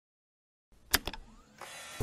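Logo-intro sound effects: two sharp clicks about a second in, then a rising whoosh near the end.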